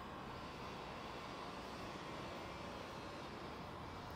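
Steady outdoor background noise, an even hum with no distinct events.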